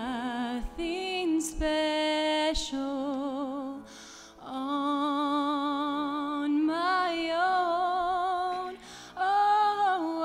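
A woman singing a slow song with vibrato on long held notes, with a short break for breath about four seconds in.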